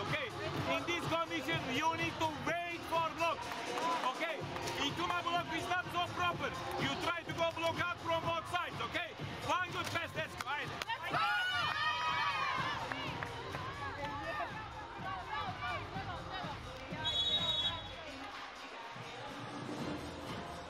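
A man's voice giving rapid instructions in a team timeout huddle, over arena music and faint crowd noise.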